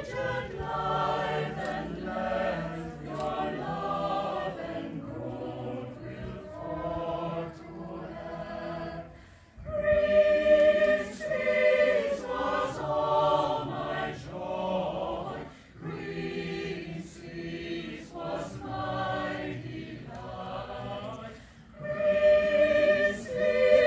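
Mixed choir of women's and men's voices singing a cappella. The singing breaks off briefly about halfway, then comes back in louder.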